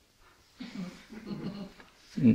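Soft laughter. It starts about half a second in, after a brief near-silence, and comes in short broken bursts.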